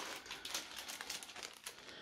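Small clear plastic zip-lock bags of LEGO parts crinkling as they are picked up and handled, a faint run of soft crackles.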